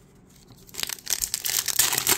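Plastic foil wrapper of a Topps Update trading-card pack crinkling and tearing open, starting under a second in as a dense crackle.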